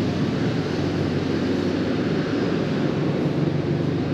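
Steady low droning hum with a hiss over it, unbroken and even in level, with no separate knocks or voices.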